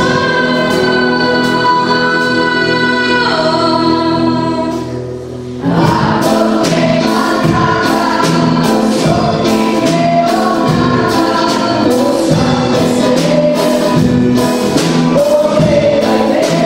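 A school choir singing with a small band of double bass, guitar, accordion and plucked strings. A long held chord fades out about five seconds in, then the music picks up again in a rhythmic passage with plucked and strummed accompaniment.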